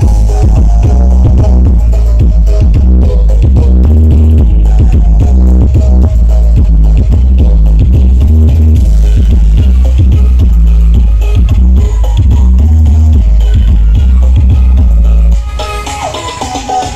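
Electronic dance music played at very high volume through a truck-mounted 'sound horeg' loudspeaker stack, with a dominant, heavy bass and a steady beat. About fifteen seconds in the level drops sharply.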